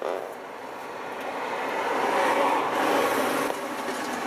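A Volvo lorry driving past, heard from inside a stopped car: its engine and tyre noise swells over a couple of seconds and is loudest shortly before the end.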